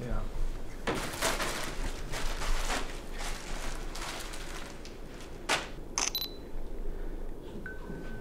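Digital SLR camera shutter firing a quick run of shots, several clicks a second, then a few single clicks.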